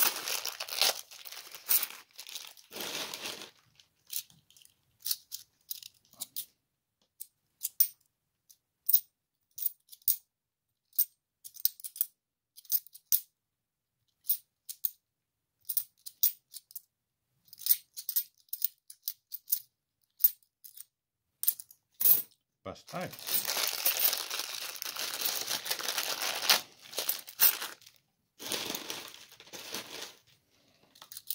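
Plastic coin bag crinkling as it is opened, then a long run of sharp separate clicks as 50p coins are knocked against one another while being checked one at a time. From about 23 s a longer spell of plastic crinkling with coins shifting in the bag.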